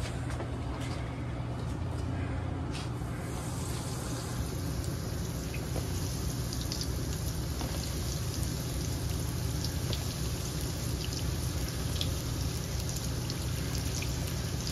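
Breaded curry buns deep-frying in a commercial fryer: the oil sizzles and crackles steadily with scattered tiny pops, the sizzle growing fuller about three and a half seconds in, over a steady low hum.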